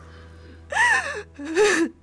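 A woman crying: two sobbing wails in quick succession, each falling in pitch, the first high and the second lower.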